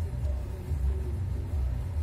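Low, uneven rumble inside a car's cabin as it rolls slowly over a cobblestone street: the tyres on the paving stones and the engine.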